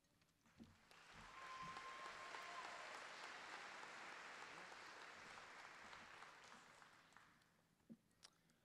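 Audience applauding, faint and distant. It swells in about a second in and dies away near the end, with a single light knock at the very end.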